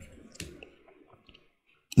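A pause in a man's speech: near silence with one faint click about half a second in.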